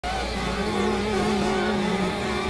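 Dense, layered experimental electronic music: several sustained drone tones waver slowly in pitch over a thick, noisy bed of sound.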